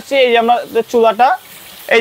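A man talking over the steady sizzle of fish frying in oil in a nonstick pan. The sizzle is heard alone for about half a second during a pause in his speech.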